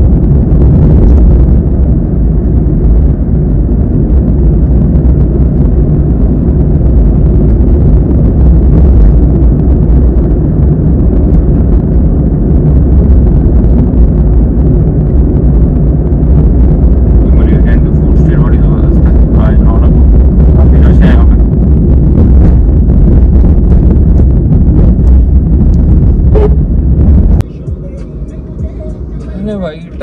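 Loud, steady low rumble of a car driving, heard from inside the cabin: road and engine noise. It cuts off abruptly near the end, giving way to quieter sound.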